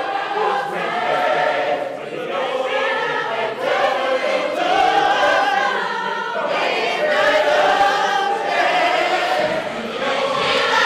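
Large youth gospel choir singing in parts, holding long notes in phrases with short breaks between them.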